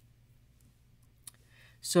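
Near silence, broken about a second and a quarter in by a single short click, followed by a soft breath and the start of speech near the end.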